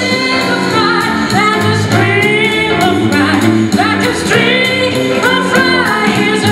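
A woman singing a blues song with a live band, holding long notes over bass guitar, drums and keyboard.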